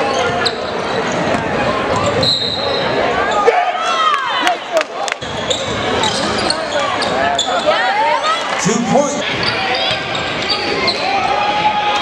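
Live gym sound of a high school basketball game: a basketball dribbled on a hardwood court, with many short sneaker squeaks on the floor and sharp bounces about four to five seconds in. Voices from players and crowd run underneath.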